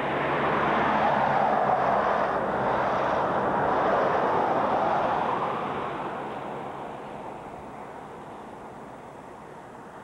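A vehicle passing on the road: tyre and engine noise swelling in the first seconds, then fading away by about seven seconds in.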